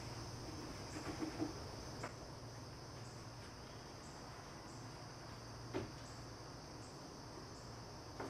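Crickets chirping faintly and steadily in the background, with a few soft knocks, the clearest about six seconds in.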